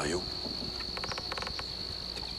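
Crickets chirring in a steady, high-pitched chorus. About a second in, a brief rapid run of clicks is heard.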